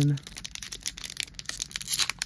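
Foil Pokémon booster-pack wrapper being torn open by hand: a run of irregular crinkling and tearing crackles.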